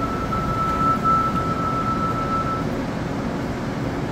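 A steady single-pitched departure warning tone sounding over the steady hum of an Osaka Metro 30000 series subway train standing in an underground station, stopping about two and a half seconds in: the signal that the doors are about to close and the train will depart.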